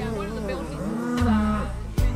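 Cattle mooing over a song playing in the background.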